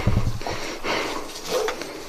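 Foxes giving a few short, sharp barks, more a guarding bark than a happy one.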